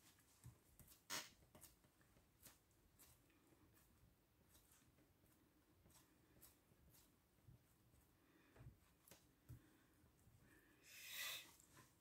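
Near silence in a small room: faint, scattered ticks and rustles of a cloth being pressed and rubbed over a glued paper card, with a slightly sharper click about a second in and a brief soft rustle near the end.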